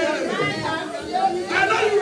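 Several people talking at once: overlapping congregation chatter with no single clear voice.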